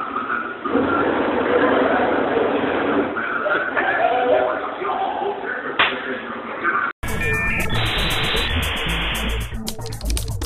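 Muffled voices and room noise in a tinny, low-quality phone recording, with one sharp knock near the six-second mark. About seven seconds in it cuts off abruptly and gives way to an outro music sting with a rhythmic beat.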